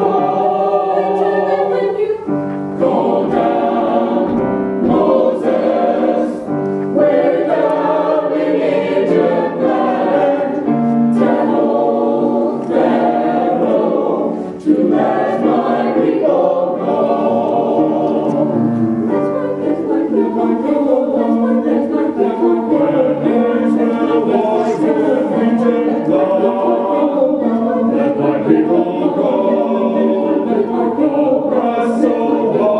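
Mixed choir of men's and women's voices singing with piano accompaniment.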